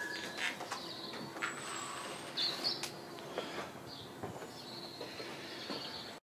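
Faint bird chirps, short separate calls scattered through, with a few light clicks.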